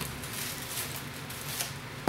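Rustling and crinkling of paper packing as hands dig through a box and lift out a paper-wrapped item, with a few light scrapes.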